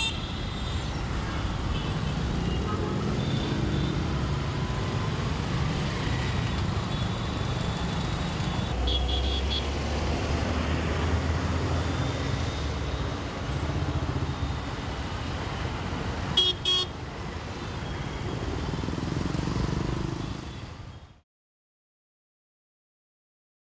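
Heavy, slow-moving city road traffic: the mixed engines of auto-rickshaws, scooters, motorcycles and cars running in a steady rumble. Horns honk briefly twice, about nine seconds in and again, louder, near sixteen seconds. The sound fades out about a second before the end.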